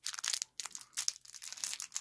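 A small clear plastic bag of round beads crinkling as it is handled in the hand, a quick run of small crackles and clicks.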